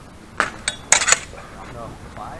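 Steel sparring swords clashing blade on blade, four quick ringing strikes within under a second, the last two the loudest.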